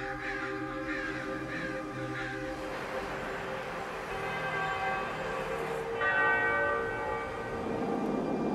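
Church bells ringing, their overlapping tones hanging and fading, with a fresh set of tones starting about six seconds in.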